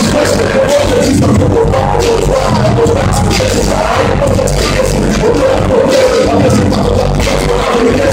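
Live hip hop music played loud through a club PA: a steady, bass-heavy beat with a rapper's voice over it on the microphone.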